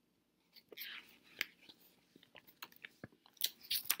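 Glossy magazine pages being handled and turned: scattered soft crinkles and small clicks of paper, with one sharper snap about a second and a half in and a quicker run of small clicks near the end.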